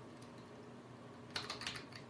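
Computer keyboard typing: a quick run of a few faint keystrokes about halfway through.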